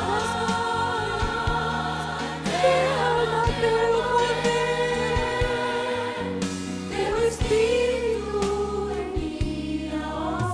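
A woman and two children singing a song together into microphones over instrumental accompaniment with steady bass notes.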